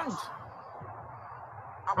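A man's speech trails off, then a pause of faint, steady background hiss, and his voice comes back in just before the end.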